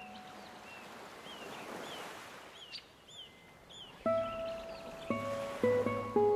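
Gentle ocean waves wash in and fade, with a few short bird chirps over them. About four seconds in, a classical guitar starts plucking single notes that ring on, three or four of them in the last two seconds.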